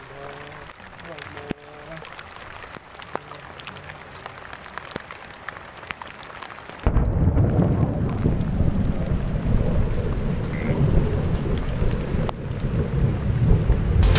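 Scattered light ticks and rustling, then about seven seconds in a sudden loud, low rumble of thunder that carries on, with rain.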